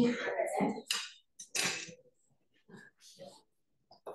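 A person puffing out short breaths while tasting hot food, two breathy bursts about a second in, among soft murmured voices.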